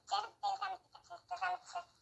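A person speaking quietly and steadily in a small room. The words are not made out.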